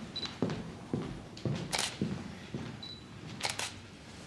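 A single-lens reflex camera close by: two short high autofocus beeps and several sharp shutter clicks, one pair in quick succession. Soft footsteps on a parquet floor, about two a second, fade out after the first half of the stretch.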